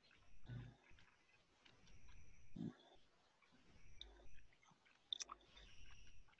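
Near silence, with a few faint, scattered soft thumps and small clicks.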